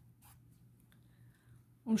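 Faint scratching of a pen writing on paper, with a light tick about a second in.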